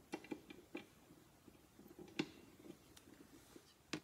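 Faint scattered clicks and light taps of small painted pieces being handled at a work table, with one sharper knock about two seconds in.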